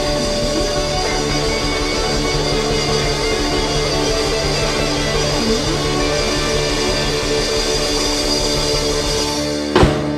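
Live rock band with electric guitars and drums holding a long sustained chord as the song winds down, ending with a single sharp hit near the end.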